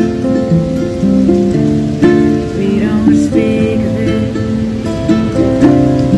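Acoustic guitar and ukulele strummed together in an unhurried folk accompaniment, the chords changing every second or so.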